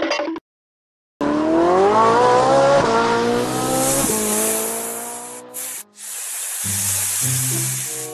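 Car sound effect: an engine revving away with tyres screeching, its note rising for about three seconds, dropping once and rising again, then fading. It follows a short silence, and music with stepping low notes comes in near the end.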